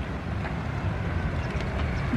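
Low, steady rumble of wind buffeting the microphone.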